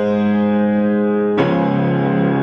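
Piano playing slow, sustained chords: one chord rings on, then a new chord with a lower bass note is struck about a second and a half in.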